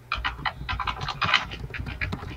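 Rapid clicking of laptop keyboard keys while a short chat message is typed, about ten sharp clicks a second.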